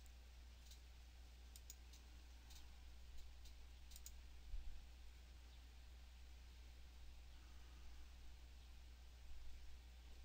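Near silence with a few faint computer mouse clicks scattered through it, most of them in the first few seconds, over a steady low hum.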